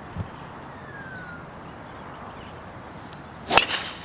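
A golf driver striking a teed-up ball: one sharp crack about three and a half seconds in, over a low, steady outdoor background.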